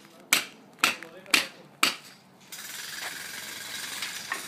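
Four sharp hammer blows about half a second apart, followed a little past halfway by a steady hiss.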